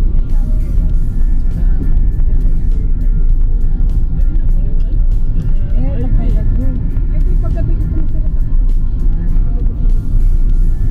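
Car cabin noise on a wet road: a loud, steady low rumble of engine and tyres. Music with a voice plays underneath, likely from the car's radio, and short clicks come through at intervals.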